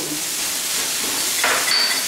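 Vegetables sautéing in oil in a hot wok, a steady sizzle, with a spoon stirring them and a short louder scrape about one and a half seconds in.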